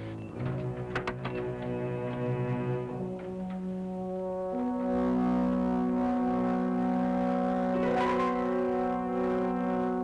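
Film score of long held brass chords, which shift at about three seconds and swell louder about halfway through. A couple of brief knocks sound under the music.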